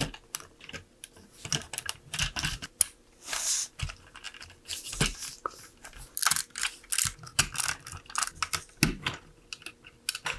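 LEGO bricks and Technic pieces being handled and pressed together by hand: irregular plastic clicks, taps and rattles, with a short scrape about three and a half seconds in.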